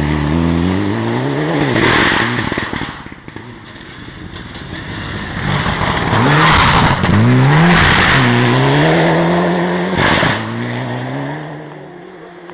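Mitsubishi Lancer Evolution rally car's turbocharged four-cylinder engine revving hard through the gears, its pitch climbing and dropping at each shift. It is loudest as it passes close about two thirds of the way in, with a short sharp burst just before it fades near the end.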